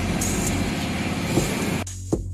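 Steady background noise with a low hum underneath, cut off abruptly near the end.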